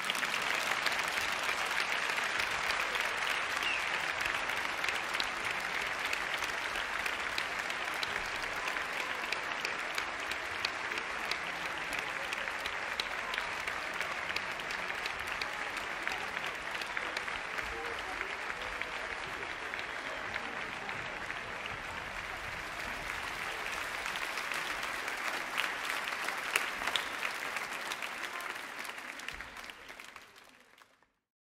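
Large audience applauding steadily, the clapping dying away near the end.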